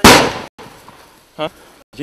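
A single loud, sharp bang right at the start, dying away over about half a second, like a shot or small blast.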